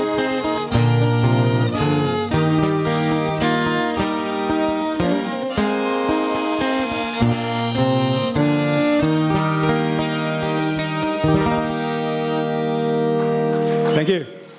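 Instrumental close of a folk song: harmonica carrying the melody over a strummed acoustic guitar and a bowed fiddle. The music ends on a long held final chord that stops suddenly at the very end.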